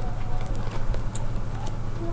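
A binder page of lithographs in plastic sheet protectors being turned by hand, giving a few faint crackles and ticks over a steady low hum.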